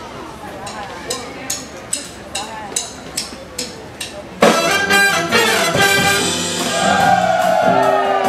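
A steady count-in of sharp cymbal taps, about two and a half a second, over a low murmur. About four and a half seconds in, a big jazz band with trumpets, trombones and saxophones comes in loud together and plays on.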